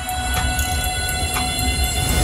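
An electronic suspense cue for a score reveal: a sustained synthesized drone of several steady tones, with a regular tick about three times a second over a low rumble that builds toward the end.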